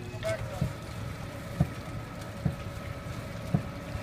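Winch and tow vehicle engine running steadily with a whine, hauling a wrecked car out of a canal on a cable, with a short low knock about once a second.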